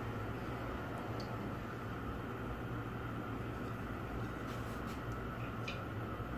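A steady low hum with a soft hiss, and a couple of faint light ticks about a second in and near the end.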